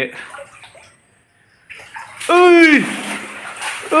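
Water splashing and washing across a flooded concrete floor, starting about two seconds in. Over it a voice gives one loud cry that falls in pitch, and a few words come at the very start.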